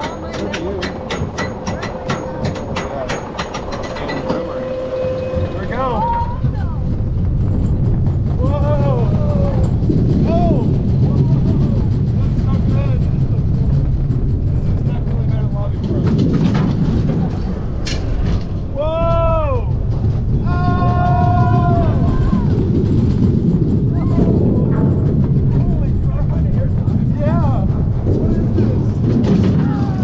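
Intamin bobsled coaster car clicking regularly, several times a second, as it climbs the lift hill, then rumbling steadily as its wheels run loose down the trough. Riders whoop and scream a few times during the descent.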